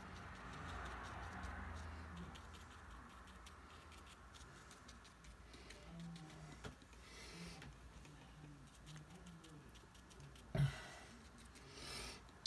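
Paintbrush dabbing and stippling paint onto watercolour paper: a faint, irregular patter of small taps. One louder knock comes about ten and a half seconds in.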